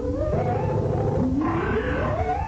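Electronic synthesizer music played live. A synth line climbs upward in small steps, then starts again low, over and over, above a dense low rumbling bed.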